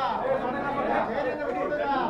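Several people talking at once: overlapping chatter of many voices, none clear on its own.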